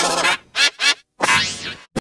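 Cartoon sound effects from the remixed logo soundtrack. Two short pitched calls come in quick succession, then after a brief gap a longer call rises and falls in pitch.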